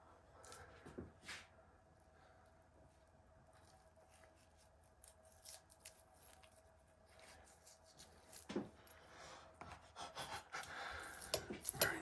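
Faint knife work on raw venison: a blade slicing sinew and silver skin off the meat, with soft scrapes and small taps on the wooden board, more frequent in the last few seconds. A faint steady hum runs underneath.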